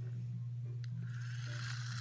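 Small wind-up toy truck's motor whirring as its wheels spin freely in the air, starting about a second in, over a steady low hum.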